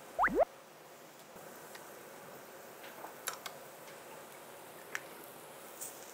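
Two quick rising whistle-like glides right at the start, then faint scattered clicks and taps of chopsticks and tableware while a lettuce wrap of grilled beef is folded by hand.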